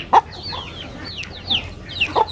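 Chickens calling: a quick run of short, high chirps that fall in pitch, several a second, with one brief, sharp, louder sound just after the start.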